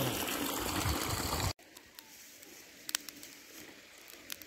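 Spring water running into a stone trough, a steady trickling rush that cuts off abruptly about a second and a half in. After that there is only faint background with a few small clicks.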